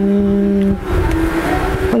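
A man's voice drawing out a syllable at one steady pitch for most of a second, then a quieter, hesitant hum before he goes on speaking.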